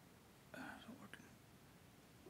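Near silence with room tone, broken about half a second in by a brief, faint person's voice lasting well under a second.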